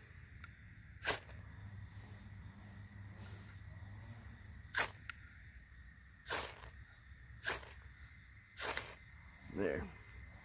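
Ferrocerium rod struck five times with the spine of a Boker Plus Kormoran knife, each a short, sharp scrape throwing sparks onto fatwood shavings, which catch fire near the end. A short vocal sound comes just before the end.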